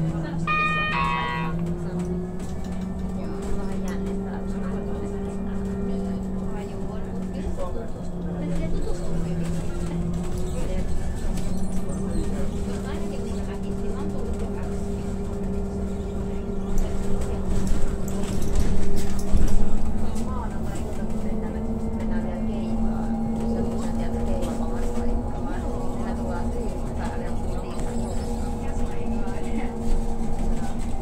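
Inside a moving city public-transport vehicle: a steady running drone with motor tones that slowly rise and fall in pitch as it changes speed. A short electronic chime sounds about a second in, and the rumble grows louder for a few seconds just past the middle.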